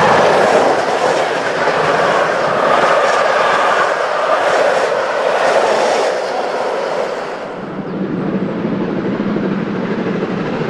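A train passing close by, its wheels clattering over the rail joints. About seven and a half seconds in the sound falls away and turns duller as the train draws off.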